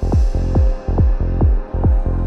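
Psytrance music: a four-on-the-floor kick drum hitting about twice a second, each hit dropping in pitch, over a steady low bass.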